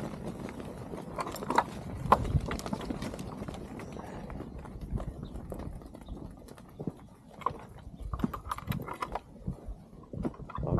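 A mob of ewes moving through sheep yards: many small hooves knocking irregularly on dirt and stones, a continuous scattered clatter.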